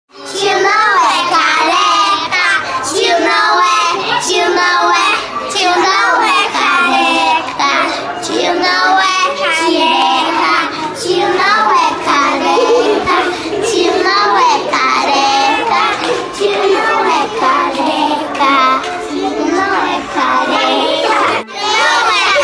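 A group of young children singing loudly together, with a brief break near the end.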